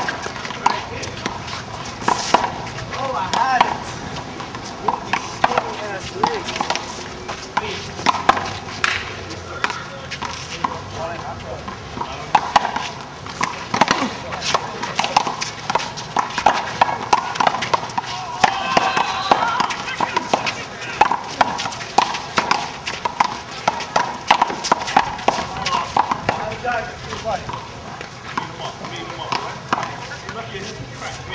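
Rubber handball rally: sharp smacks of the ball being hit by hand and slapping the concrete wall and pavement, mixed with sneaker footsteps, scuffs and players' voices.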